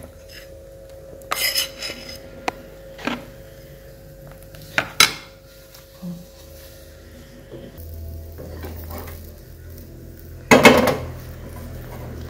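Metal kitchenware clinking: a utensil knocking against a stainless steel bowl and a frying pan, with a handful of sharp clinks in the first half and one louder clatter near the end.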